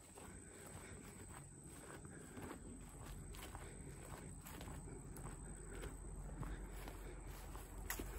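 Faint footsteps walking over mown grass, soft and irregular.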